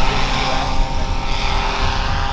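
Paramotor engine and propeller of a powered paraglider in flight, droning at a steady, even pitch.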